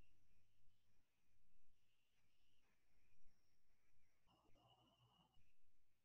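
Near silence: faint room tone, with one brief, faint sound carrying a steady high tone a little after four seconds in.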